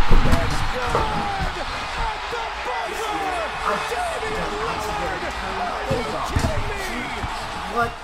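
Arena crowd erupting in cheers and screams after a buzzer-beating game-winning shot, heard on the TV broadcast, many voices shouting at once with scattered low thumps.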